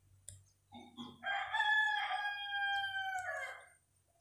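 One long bird call with a crow-like shape: it starts about a second in, is held steady for nearly three seconds, then tapers off.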